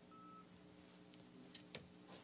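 Near silence: room tone with a low steady hum. There is a short, faint electronic beep near the start and a couple of faint clicks a little later.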